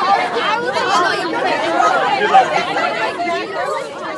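A crowd of young fans chattering, with many voices talking over one another at once.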